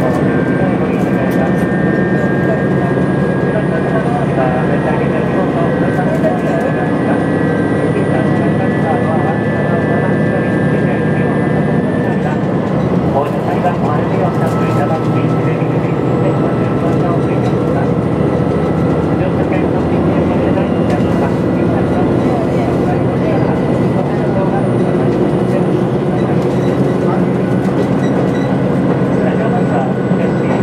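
Cabin noise of a JR Shikoku 2000 series tilting diesel railcar running along the line: a steady drone of the engine and wheels on the rails. Faint high whines shift in pitch about twelve seconds in.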